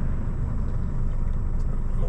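Heavy truck's diesel engine running with a steady low rumble, heard from inside the cab.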